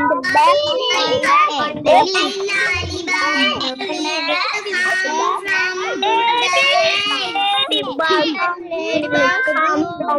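Several young children reading a short text aloud together over a video call, their voices overlapping and not quite in step.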